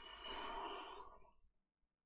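A man sighing: one long breathy exhale that fades out about a second and a half in.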